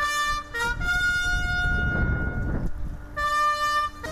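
Military brass band playing long sustained chords, each held about a second. A low rumble swells under a long held note in the middle.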